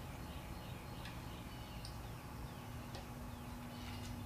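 Quiet workshop background with a few faint, light metallic clicks of a long screwdriver working shims into a VW Type 1 engine's distributor drive gear bore, and several short, faint, high chirps sliding down in pitch.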